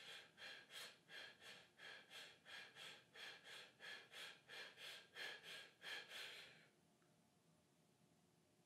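A man's rapid, shallow breaths, faint and evenly paced at about three puffs a second, stopping abruptly near the end. These are the fast breaths of a drill meant to wake up the brain: nine quick breaths before one slow, held breath.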